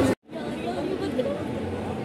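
Background chatter of several voices, with a brief dropout just after the start where the sound cuts out completely and then resumes at a lower level.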